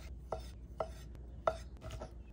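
Chef's knife cubing raw scallops, the blade knocking down onto a wooden butcher-block cutting board four times at uneven intervals.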